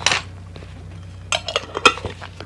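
A metal spoon and a glass jar clinking as they are set down and handled: a brief scrape at the start, then a few quick sharp clinks in the second half.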